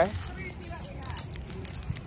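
Keys jangling, with scattered light clicks, while someone walks over pavement.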